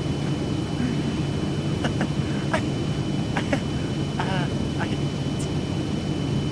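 A steady low rumble of outdoor background noise, with a few faint clicks. A brief laugh comes about four seconds in.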